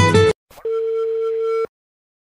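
The song's music stops short. After a faint click, a single steady telephone line tone sounds for about a second, as a phone call is placed.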